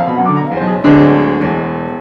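Acoustic grand piano played at a slow tempo, several notes in the bass and middle register. A louder chord is struck about a second in and rings on, slowly fading.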